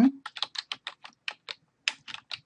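Computer keyboard being typed on: a quick, uneven run of about a dozen keystrokes as a word is entered into a spreadsheet cell.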